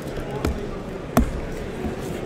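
Two sharp knocks on a cardboard shipping case while a knife blade cuts open its packing tape. The second knock is the louder.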